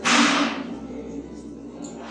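Chalk scraping on a blackboard as a word is written: one sharp scratchy stroke at the start, then fainter scratching.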